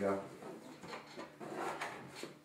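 Side panel of a Thermaltake PC tower case being slid and pressed into place by hand, giving a few light scrapes and clicks.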